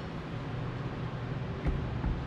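Steady low room hum and background noise, with a brief low bump near the end.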